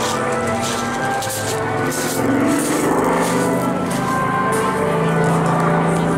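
Music over the airshow loudspeakers, mixed with the steady drone of a Spitfire PR Mk XIX's Rolls-Royce Griffon V12 engine. The engine's pitch shifts as the aircraft manoeuvres overhead.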